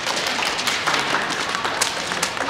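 A small group of children applauding, a dense patter of hand claps.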